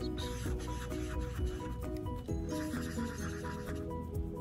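Felt-tip marker rubbing and dabbing on paper as small dots are coloured in, over background music playing a melody of short notes.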